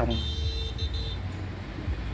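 Motorbikes riding past on a street, a steady low rumble of engines and traffic. A thin, high tone sounds briefly during the first second.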